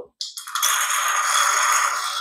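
Hand-worked stainless steel syringe drawing through its silicone tube from an RC excavator's hydraulic oil tank: a steady rattling hiss lasting nearly two seconds.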